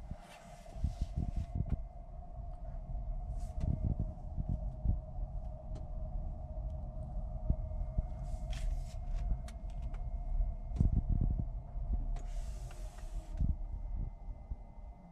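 Car rolling slowly, heard from inside the cabin: a low tyre and road rumble with a steady mid-pitched hum throughout and a few dull low thumps.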